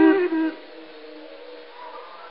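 Male Quran reciter's voice holding a long melodic note at the end of a verse, cutting off about half a second in. The faint hiss of an old recording follows.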